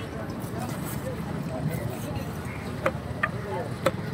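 Busy fish market background: indistinct voices over a steady background noise, with a few sharp knocks and clicks in the last second and a half.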